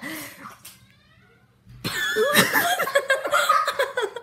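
A person laughing, starting about two seconds in after a brief pause.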